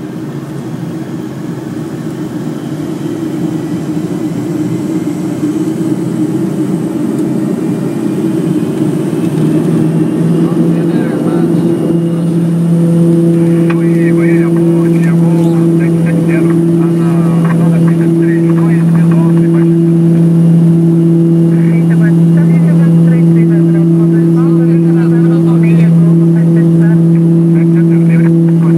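Twin PT6A turboprop engines and propellers of a Beechcraft King Air B200 heard from inside the cockpit, coming up to takeoff power: the sound grows louder over roughly the first ten seconds, then holds as a steady loud propeller hum with a low tone and a higher tone over it during the takeoff roll.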